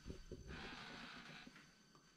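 Near silence: faint room tone, with a soft hiss lasting about a second.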